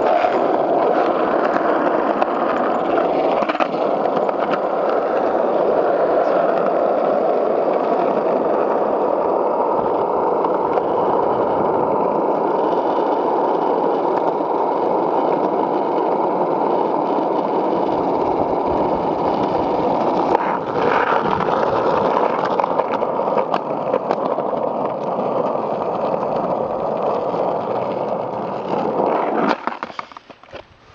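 Skateboard wheels rolling over rough asphalt: a loud, steady rumble that cuts off shortly before the end as the board stops.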